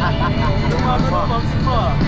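Coach bus engine and road noise, a steady low rumble heard inside the passenger cabin, with people's voices over it.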